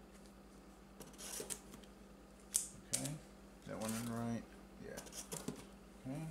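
Plastic-bagged comic books rustling and tapping as they are handled and set down, with two sharp clicks about two and a half and three seconds in. A short hummed vocal sound comes around the middle.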